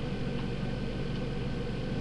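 Steady low hum with an even background hiss, unchanging throughout: constant room noise from something like an air conditioner or a computer fan.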